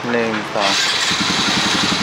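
Honda MSX125's small single-cylinder engine started by the remote: about half a second in it cranks, then catches and settles into a fast, even idle.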